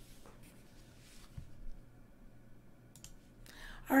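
Quiet room tone with a few faint clicks and a soft knock, then a woman begins speaking near the end.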